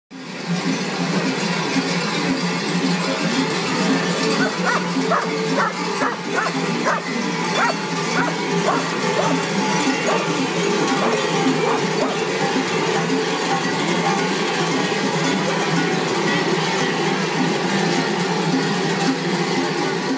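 Many large metal bells worn by marching bell-bearers clanging together in a dense, continuous clatter. From about four to eleven seconds in, a run of short sharp sounds, about two a second, rises above it.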